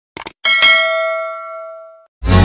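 Subscribe-button sound effect: a quick double mouse click, then a notification bell ding that rings and fades over about a second and a half.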